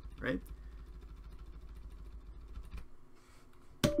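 Quiet background with a faint steady low hum that cuts out a little before three seconds in. Just before the end a plucked-string music chord starts.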